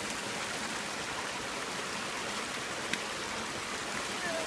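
Steady rushing of floodwater from a swollen stream running across a paved path, with one short click about three seconds in.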